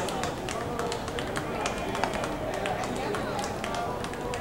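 Ballpark crowd sound: indistinct voices from the stands with many scattered sharp claps and knocks.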